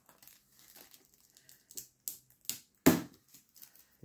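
Thin protective plastic film being peeled off a diecast model car: scattered small crinkles and crackles, with the sharpest, loudest snap about three seconds in.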